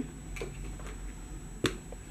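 Quiet room with a few faint handling clicks as a crocheted piece and a doll are handled, one sharper click about one and a half seconds in.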